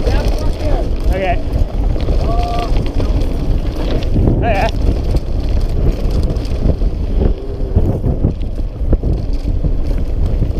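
Mountain bike descending a dirt trail: heavy wind buffeting on the on-board camera's microphone and tyre rumble over the dirt, with a few short pitched calls over it.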